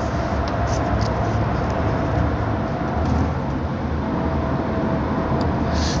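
Steady background noise with a low hum and a faint, thin steady tone above it, unchanging throughout.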